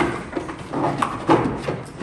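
Young Belgian Malinois barking in a quick run of short barks, about three a second, as it is worked up to bite a bite suit.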